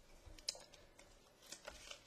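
Faint clicks and taps of a small metal vape box mod being handled and set down on a table, with a sharper click about half a second in and a few more around a second and a half.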